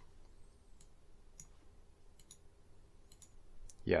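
Several faint computer mouse clicks, spaced about a second apart, as buttons are clicked in a program on screen.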